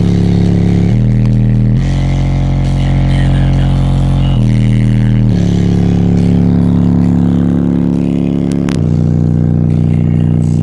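Two Rockford Fosgate P3 15-inch subwoofers on a 2-ohm load playing loud, deep sustained bass notes that step to a new pitch every one to three seconds.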